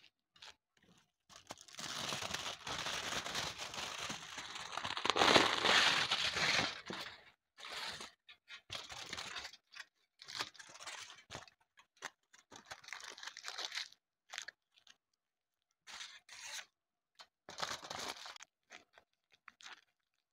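Aluminium foil being crumpled and squeezed by hand into a shape: a long loud crinkle through the first several seconds, then shorter bursts of crinkling as it is pressed.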